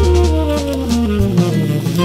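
Instrumental jazz led by saxophone, over bass and drums, with a run of notes falling steadily in pitch.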